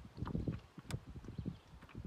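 Water lapping and knocking against a canoe's hull: a quick, irregular run of soft low thumps, with one sharp click about a second in.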